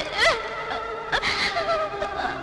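Melodramatic film background score holding high, wavering notes, with a man sobbing and catching his breath over it.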